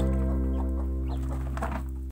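A held chord of background music slowly fading, with chickens clucking softly over it.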